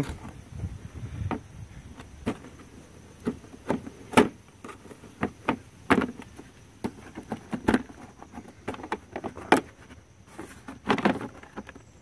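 Hard plastic cover plate on a BMW E36's front end being worked loose by hand: irregular clicks and knocks as its tabs and clips are pried free.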